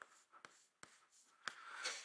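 Chalk writing on a blackboard: a few faint, short taps spaced out over the two seconds.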